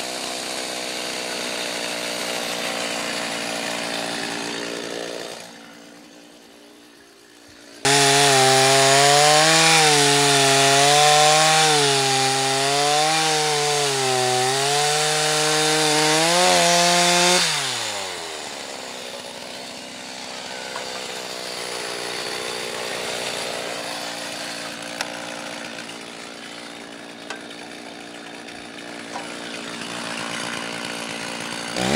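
Two-stroke chainsaw idling, then opening up suddenly about eight seconds in and cutting into a dead tree trunk for about ten seconds, its pitch wavering up and down under the load. The revs then fall away and it drops back to idle.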